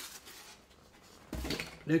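Plastic packaging wrap being handled: faint rustling, then a louder rustle with a bump about a second and a half in.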